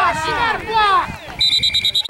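Spectators cheering and shouting, then about one and a half seconds in a referee's whistle is blown, a high tone in a rapid pulsing trill that blows the play dead.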